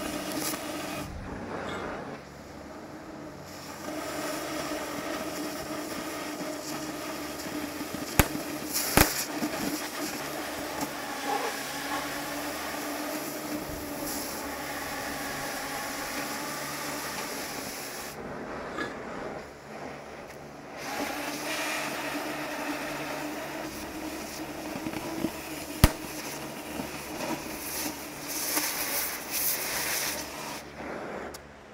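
Oxy-fuel cutting torch hissing steadily as it cuts through heavy-wall steel pipe, with a few sharp pops. The hiss drops away briefly twice, about two seconds in and again past the middle.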